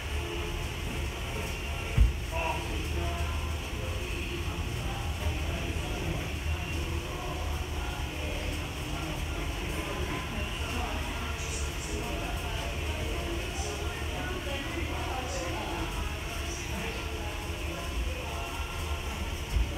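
Gym room sound: faint background music and indistinct voices over a steady low rumble, with one sharp, heavy thump about two seconds in.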